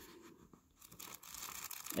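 Faint rustling of an old paperback's paper pages as the book is opened and handled, starting about a second in and growing toward the end.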